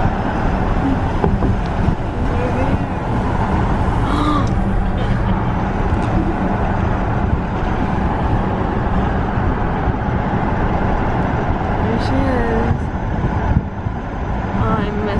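A car being driven at road speed, heard from inside: steady road and tyre noise.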